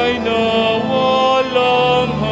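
A hymn being sung, with voices holding long notes that glide from one pitch to the next.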